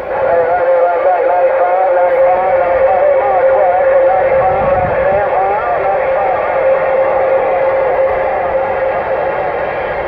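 A Uniden Grant XL CB radio's speaker plays a received distant skip signal: a steady whistle-like tone with warbling, wavering audio over it, thin and cut off at the top like narrow-band radio sound.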